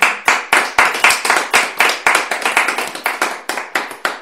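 Hand clapping from a small group, one pair of hands close and loud, at about four claps a second.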